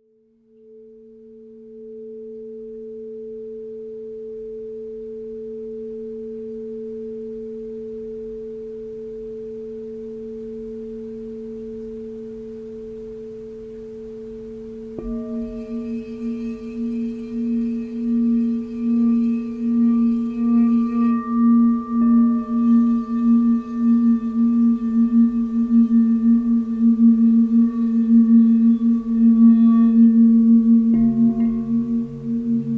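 Singing bowls. A bowl fades in and holds a steady low tone with one higher tone above it. About halfway through a second bowl is struck, adding higher ringing tones, and the low tone grows louder and pulses in a slow, wavering beat.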